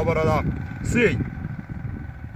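A man speaking in short phrases, then a pause filled by a low rumbling noise.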